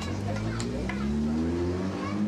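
Café ambience: indistinct chatter of several people talking at once, with a few short clinks of crockery or cutlery over a steady low rumble.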